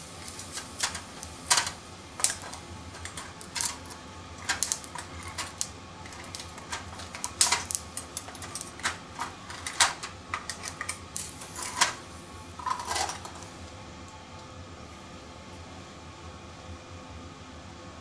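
Oysters in the shell grilling over a gas flame: irregular sharp crackles and pops over a steady sizzling hiss. The pops die away about 13 seconds in, leaving only the hiss.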